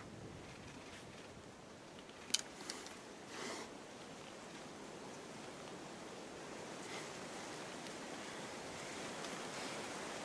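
Faint, steady outdoor hiss of air and background noise, with a single sharp click about two and a half seconds in and a short breathy rush about a second later.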